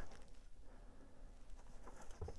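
Faint handling sounds of cycling shoes being set down and picked up on a workbench, with a couple of light ticks near the end, over a low steady hum.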